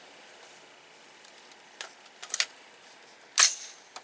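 Rifle-handling noises: a few light clicks around the middle, then one sharper, louder clack near the end as an AR-style rifle is set down on a sandbag rest on a wooden table.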